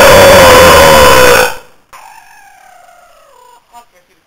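A person's scream, loud enough to overload the microphone, lasting about a second and a half, then a quieter wail that falls in pitch.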